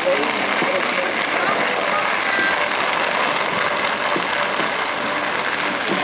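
Steady rolling hiss of inline skate wheels on an asphalt path, with faint children's voices underneath.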